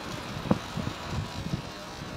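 Brinjal slices frying in oil in an iron kadai, a soft steady sizzle with a faint knock about half a second in.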